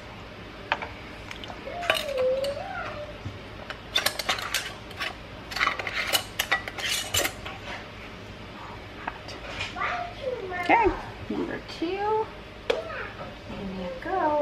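Metal canning lid and screw band clicking and clinking against a glass mason jar as the jar is closed, a quick run of sharp clicks through the middle. A wavering voice-like sound rises and falls near the start and again in the last few seconds.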